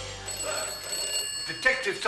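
Office background sound: a telephone ringing with a steady high tone, and voices coming in about one and a half seconds in, as the last of the title music dies away at the start.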